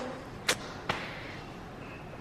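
Two short, sharp clicks about half a second apart, the first louder, over faint room tone.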